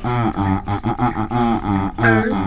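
Unaccompanied sung vocals from an a cappella hip-hop track: low voices hold and change notes in a wordless or drawn-out chorus, with no instruments.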